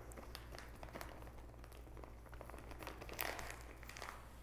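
Faint, scattered small clicks and crackles of a mouth working a spoonful of dry herbal supplement powder held without swallowing, a little louder about three seconds in.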